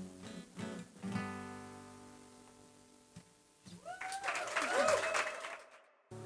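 Acoustic guitar strumming the closing chords of a song, the last chord ringing out and fading over about two seconds. About four seconds in, the audience breaks into cheering, whooping and clapping, which cuts off abruptly just before the end.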